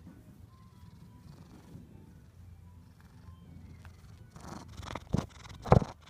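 Domestic cat purring softly and steadily while being petted. In the last second and a half, loud rubbing and a few sharp bumps as the phone's microphone is pressed into its fur.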